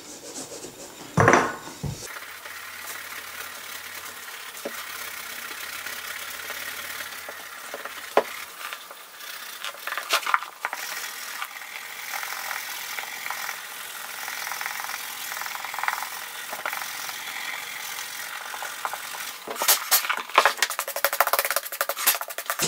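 Suede eraser block scrubbed back and forth on a suede leather boot toe, a steady dry rubbing with a few small knocks. A quicker run of strokes comes near the end.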